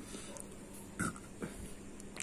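A man drinking a peg of neat whisky from a glass, with one short sound from his throat about a second in and a fainter one shortly after.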